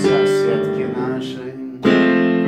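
Piano chords, one struck at the start and another near the end, each ringing on and fading between: solo piano accompaniment in a pause between sung lines.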